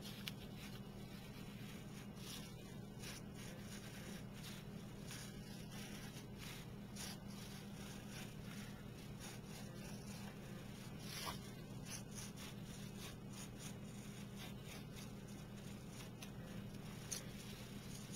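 Faint, irregular scratching of a small blade slicing lengthwise through a water lily stem against paper, over a steady low hum.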